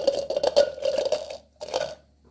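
Chopped onion pieces tossed into a clear plastic blender cup: a dense clatter of small knocks for about a second and a half, then a shorter second clatter near the end.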